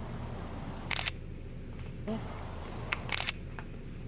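Camera shutter firing twice, about two seconds apart, as a photo is taken.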